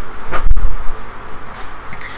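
Handling noise from reaching for and moving objects: a low thump about half a second in, then quieter rustling.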